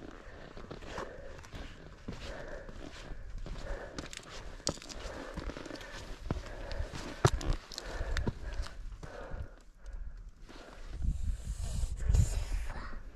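Footsteps and shoe scuffs on bare granite rock while scrambling up a steep slab, with irregular sharp clicks and scrapes. A low rumble swells near the end.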